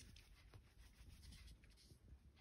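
Near silence with faint light taps and soft rubbing: a fingertip pressed and lifted on the iPad Air's top button during Touch ID fingerprint enrolment.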